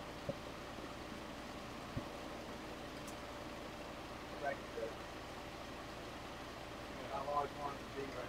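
Carlisle CC glassworking torch burning with a steady hiss as borosilicate glass is melted in its flame, with a light click about two seconds in. Faint voices come in briefly about halfway through and again near the end.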